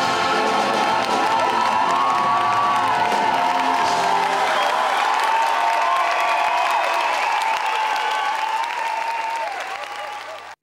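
A stage cast and choir sing the closing held notes of a song, with the audience applauding over the music, easing off near the end.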